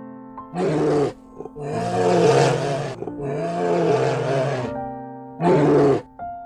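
Brown bear roaring: a short roar about half a second in, two long roars through the middle, and another short one near the end. A background tune of held notes plays in the gaps.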